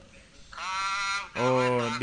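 A man speaking Thai. After a short pause he draws out one long vowel about half a second in, then carries on talking.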